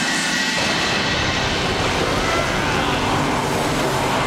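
A steady, loud rushing sound effect from a TV show's soundtrack, the magic that turns a piranha into a monster, with a few faint gliding tones about halfway through.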